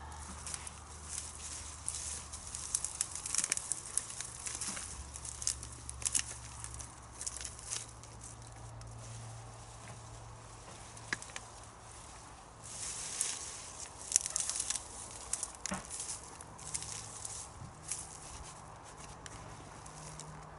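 Dry plant stems and foliage rustling, crackling and snapping as spent annual flowers are pulled up by hand, in irregular bursts with a quieter spell around the middle. A faint low steady hum runs underneath.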